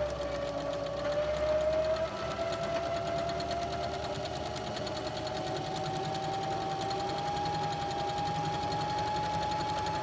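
Electric sewing machine running steadily as it stitches a straight seam through folded fabric. Its motor tone climbs slowly in pitch as it goes.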